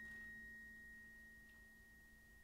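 The last of a single high, bell-like metallic note dying away slowly into near silence.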